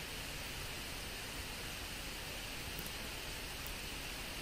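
Steady hiss of a microphone's background noise, unchanging throughout, with no distinct sound.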